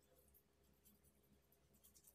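Very faint, scratchy rubbing of a grainy sugar-and-oil face scrub being massaged over the skin with the fingertips.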